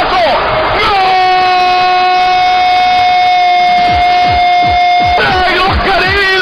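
A Spanish TV football commentator's long goal cry, held on one steady note for about four seconds and then breaking into falling shouts. Background music with a steady beat comes in under it about halfway through.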